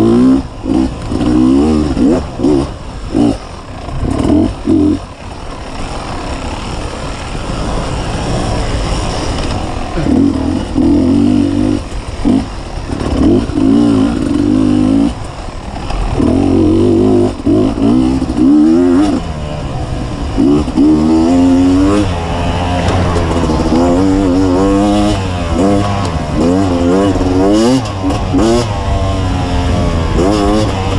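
2015 Beta 250RR two-stroke dirt bike engine being ridden hard, its pitch rising and falling constantly as the throttle is worked. There are short throttle cuts in the first five seconds and quicker, repeated revs in the second half.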